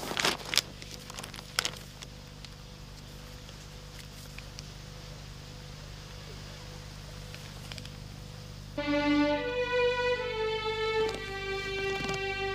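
A few brief handling sounds, then several seconds of low steady background. About nine seconds in, a slow, sad violin melody starts as background music, with long held notes.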